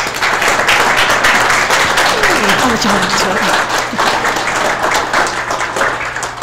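Audience applauding, with a short laugh from one person about halfway through.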